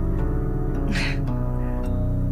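Background score music of low, sustained held notes, the chord shifting slightly midway.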